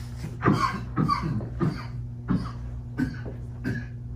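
A man coughing, about six short coughs spread over a few seconds, over a steady low electrical hum.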